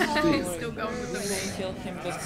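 Speech: a voice talking, with a brief high hiss about halfway through.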